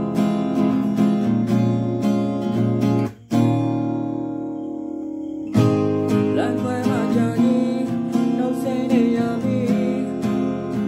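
Acoustic guitar strummed in a steady rhythm. It stops briefly about three seconds in and a chord rings on for about two seconds. Strumming then resumes, with a man singing over it from about six seconds in.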